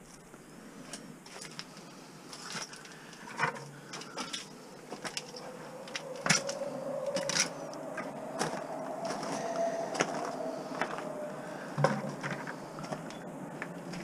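Handling noise: scattered clinks and knocks of metal tools and scrap being moved, then footsteps on gravel, with a faint drawn-out hum through the middle that rises slightly, then falls.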